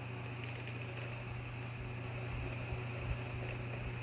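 Steady low hum of background room noise, with a faint tap about three seconds in.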